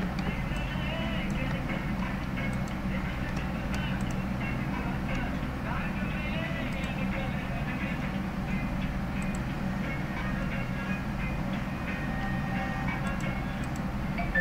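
Steady background noise with a low hum and indistinct voices in the room, and a few faint clicks.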